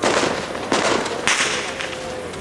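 Fireworks going off: three loud bangs in quick succession, each about two-thirds of a second after the last, each with a fading echo.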